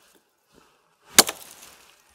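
A single axe chop about a second in: the blade strikes and cuts into an upright branch on a felled tree while snedding it off the trunk, with a short tail after the blow.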